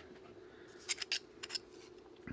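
A few light, sharp clicks of white plastic harmonic-drive gear rings being picked up and handled, clustered about a second in, over a faint steady hum.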